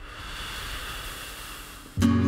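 A steady hiss of noise like static, part of the song's intro, with no instruments playing yet.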